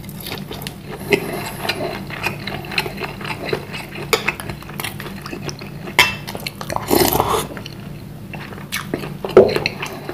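Close-miked eating of a dense bakso meatball: chewing, with a wooden spoon knocking and scraping against a ceramic bowl in many small clicks. A loud noisy stretch about seven seconds in, just after the spoon scoops broth.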